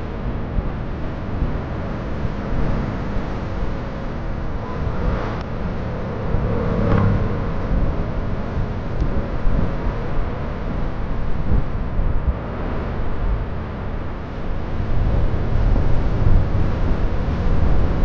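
Steady engine and road noise of a moving vehicle, heavy in the low rumble, growing a little louder near the end.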